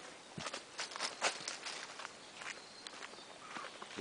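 Footsteps through dry leaf litter and twigs on a forest floor: irregular short rustling steps, busiest in the first couple of seconds.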